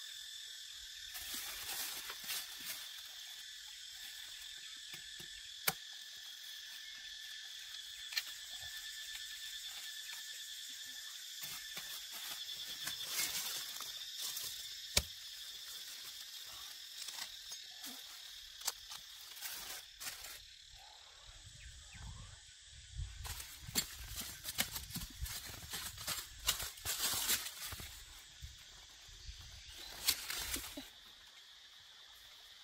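Steady, high-pitched insect drone, typical of crickets or cicadas, with scattered scrapes and rustles of dry bamboo leaves as a machete digs at a bamboo clump's roots. About two-thirds of the way through, the knocking and rustling of the digging grows denser and louder.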